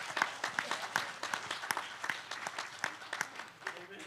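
A small congregation applauding, a steady patter of hand claps that thins out and dies away near the end.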